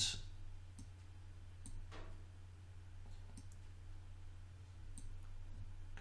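A few faint, scattered computer mouse clicks over a steady low hum.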